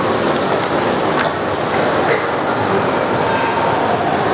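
A steady, loud rushing noise with no clear source, with faint short rustles of paper book pages being turned.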